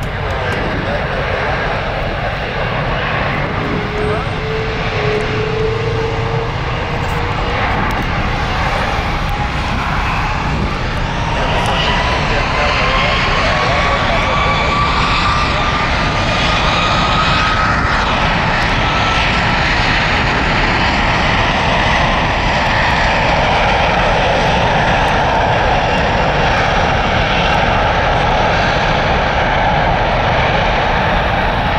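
Airbus A330-343's Rolls-Royce Trent 700 turbofans spooling up for takeoff: a whine that rises steadily in pitch over about fifteen seconds as the engine noise grows louder, then holds at takeoff thrust.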